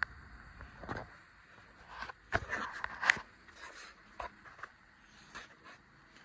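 Faint scattered clicks, knocks and rustles about a second apart: a phone camera being handled and turned around.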